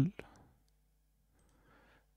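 A man's voice trails off at the very start, followed by a faint click or two of a computer mouse, then near silence with a faint low hum.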